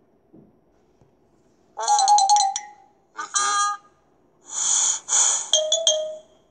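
Short electronic chime-like sound effects from a children's storybook app, in three bursts about two, three and five seconds in. The first two have sliding pitches that settle into a held note, and the last is noisier and ends on a steady tone.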